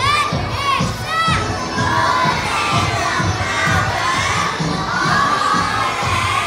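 A group of young children shouting and cheering together: three short high calls that rise and fall in quick succession at the start, then a long sustained group shout with the pitch swooping up and down.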